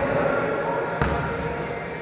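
A volleyball bounced once on the gym floor, a sharp single thud about a second in, over the background chatter of players' voices.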